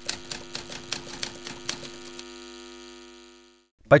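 Typewriter sound effect: quick key clicks, about six a second, for roughly two seconds as a title is typed out, over a steady pitched tone that runs on after the clicks stop and fades away.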